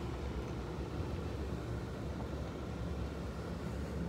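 A steady low hum with a light hiss over it, unchanging throughout.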